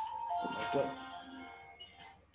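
A simple electronic tune of held notes stepping in pitch, like a phone ringtone or jingle, fading toward the end.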